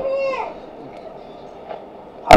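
A man's amplified voice trailing off at the end of a phrase, falling in pitch and fading within the first half-second, then a pause with only faint background hall noise.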